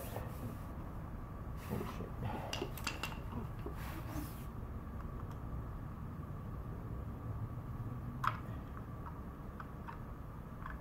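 Handling noises from hand work at a motorcycle's clutch adjuster: light rustles and small metallic clinks in the first half, then one sharper click about eight seconds in, over a low steady hum of room noise.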